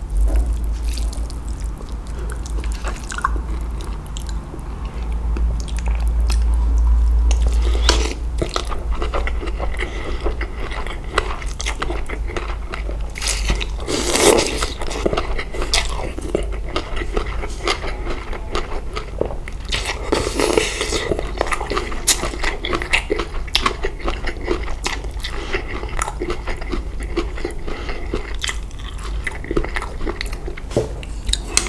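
Close-miked chewing and crunching of mouthfuls of spicy papaya salad with rice noodles and fresh leucaena seeds, with many short crisp crunches and louder bursts about a third and two thirds of the way through. A low hum sits under the first eight seconds.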